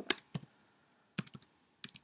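Typing on a computer keyboard: a couple of keystrokes at the start, a quick run of keys a little past one second in, and more keys near the end.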